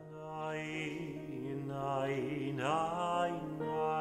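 A voice chanting a slow melody, sliding up between held notes, over a sustained lower note. The sound builds gradually.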